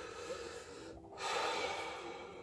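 A man's breath close to the microphone between sentences: a short rush of air starting just after a second in.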